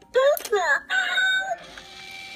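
Stealing-cat coin bank toy set off by a coin on its plate: a loud recorded cat meow from its small speaker, with pitch sliding up and down, then a held note. About a second and a half in, its small motor starts to whir as the lid begins to lift.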